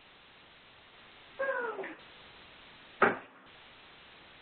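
A short animal call about a second and a half in, falling slightly in pitch, then a single sharp click or knock about three seconds in. Both come through a telephone conference line over its steady hiss.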